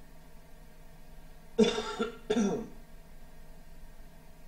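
A man coughs twice close to the microphone, about a second and a half in. The two short coughs are about two-thirds of a second apart.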